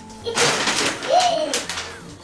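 A large shopping bag rustling and crackling as a toddler waves it about, with a short rising-and-falling tone about a second in.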